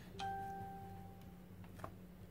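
A single soft ding about a quarter second in: a clear pitched tone that rings and fades away over a second or so.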